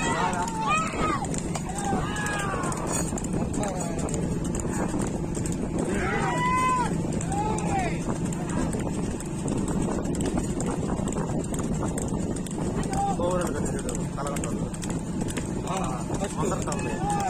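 Men on a racing bullock cart yelling drawn-out calls that rise and fall in pitch, urging the bulls on, several times: at the start, about 2 and 6 seconds in, and again near the end. Under them run the bulls' hoofbeats on the road and a steady low hum.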